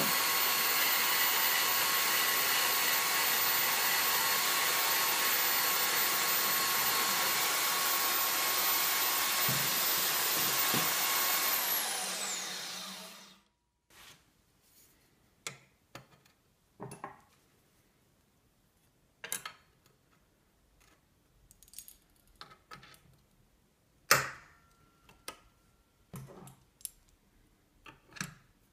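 Milwaukee portable bandsaw running steadily while cutting a metal bar, then switched off and winding down, its pitch falling, about twelve seconds in. After that, scattered light clicks and knocks of the metal bar being handled and clamped to the table.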